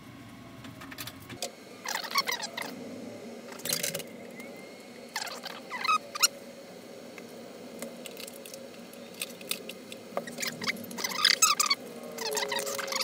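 Tray-loading CD-ROM drive of an iMac G3 Rev. A: a low hum cuts off about a second and a half in, then the plastic tray clatters shut on a disc. Several short bursts of clicking and rattling follow as the drive spins up and tries to read the disc.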